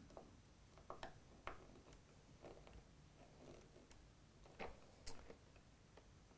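Near silence broken by a few faint, irregular clicks and ticks as a hex screwdriver tightens screws in an acrylic 3D-printer frame.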